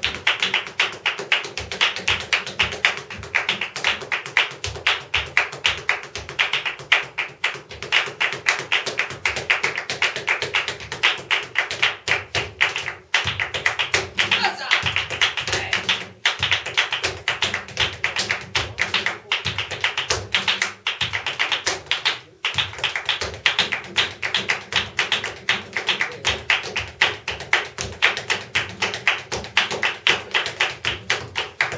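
Flamenco palmas and zapateado: rapid rhythmic hand-clapping and the dancer's heeled shoes striking the floor, over a flamenco guitar, with a few brief breaks in the strikes.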